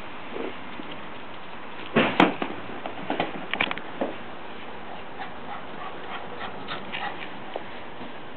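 Small dog, a shih tzu, making short vocal sounds: a loud one about two seconds in, then several brief ones over the next two seconds, followed by faint scattered clicks.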